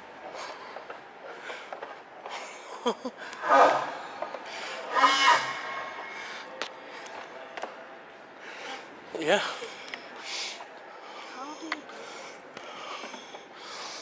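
A person laughing, two short bouts about three and five seconds in, and a brief spoken 'yeah' later, over a low rubbing, rustling background.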